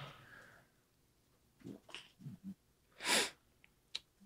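One short, sharp burst of breath noise from a person about three seconds in, like a sneeze. A few faint low murmurs come before it, over quiet room tone.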